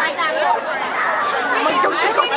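Many overlapping voices chattering and calling out at once, with no single voice standing out.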